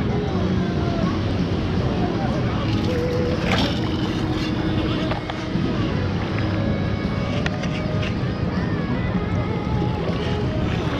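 Minelab Equinox metal detector sounding short target tones at several different pitches as it is swept over the sand underwater, over the steady wash of shallow surf and wind on the microphone, with a few sharp clicks from the sand scoop. Voices carry in the background.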